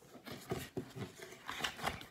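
A paperback picture book being handled and turned over: a run of short, irregular paper rustles and flaps, busier toward the end.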